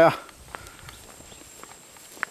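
Footsteps on a dirt footpath through scrub: a few faint, irregular scuffs and ticks of feet on the trail.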